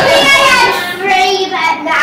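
A young girl singing a few notes, her voice holding and sliding between pitches.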